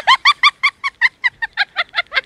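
Rapid, high-pitched staccato laughter: a string of short "ha" bursts, about six a second.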